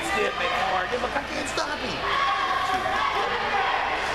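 Indistinct chatter of several spectators' voices in a large indoor sports hall, with a few faint knocks about a third of the way in.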